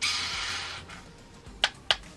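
A nearly empty plastic Fit Me foundation tube is squeezed hard, and air hisses and splutters out of the nozzle for about a second. Two sharp clicks follow near the end.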